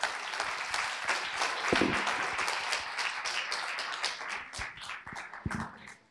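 Audience applauding in a hall, a dense patter of many hands clapping that thins out and fades near the end, with a couple of brief low thumps.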